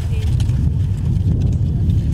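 Wind rumbling on the microphone outdoors: a loud, steady low rumble, with faint voices under it near the start.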